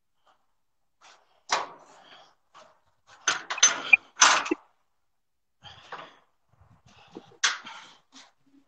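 Metal clunks and rattles from a shipping container's door locking bar and lock handle being worked by hand, in a few separate bursts: one about a second and a half in, a cluster around three to four and a half seconds, and another near the end.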